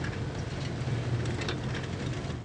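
Snow loader at work: its engine runs steadily under load while the gathering arms rake snow onto the conveyor, with a few faint clicks from the mechanism.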